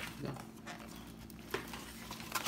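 Quiet room during a meal at a table: a brief voice sound at the start, then a single light tap of tableware about one and a half seconds in.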